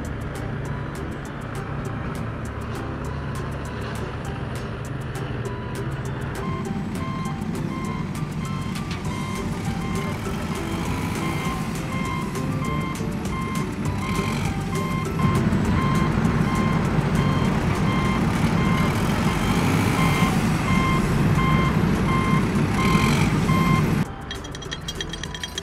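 Truck engine running, with a reversing alarm beeping about once a second from about a quarter of the way in. The engine grows louder about two-thirds of the way in.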